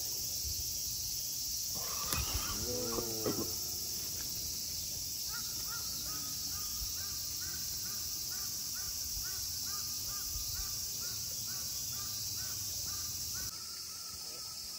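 A bird repeating a short, rising call about twice a second for several seconds. Before it, about two seconds in, there is a brief wavering cry with a couple of sharp thumps.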